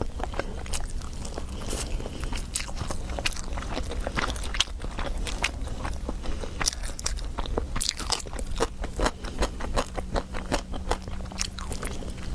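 Close-miked eating: crunchy biting and chewing, with many quick, irregular mouth clicks, over a low steady hum.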